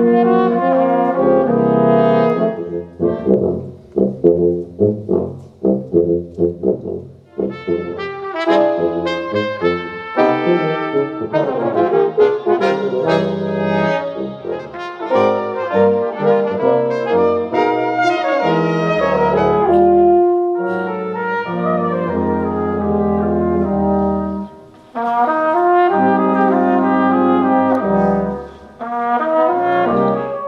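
Brass quintet of trumpets, horn, trombone and tuba playing live. Held chords give way a few seconds in to a run of short, detached notes, then fuller sustained chords return, with a brief break about five seconds before the end.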